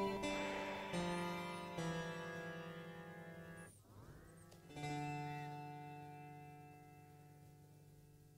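Plucked instrument notes played through the Phonolyth Cascade reverb/diffusion plugin, ringing out with long reverb tails. Just before four seconds in the sound drops out briefly as the preset changes, returning with a short sweeping pitch smear. A low note then rings and fades slowly.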